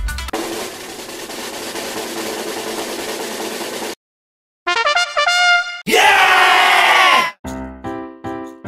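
Edited-in music and sound effects: a drum-roll-like rattle for about four seconds, a brief silence, then a short brass-like jingle and a louder downward-sliding tone, before the backing music comes back near the end.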